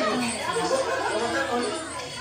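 Several people talking over one another: general chatter of a crowded room, with no single voice standing out.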